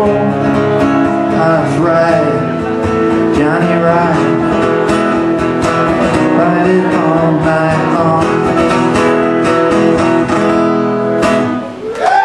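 Acoustic guitar strummed in a steady rhythm through the closing bars of a live rock and roll song, the playing stopping short just before the end.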